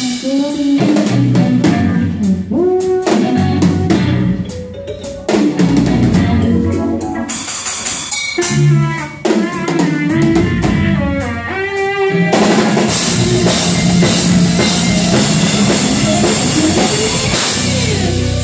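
Live progressive rock band playing, with busy drum-kit hits under keyboards and electric guitar, the pitched lines gliding up and down.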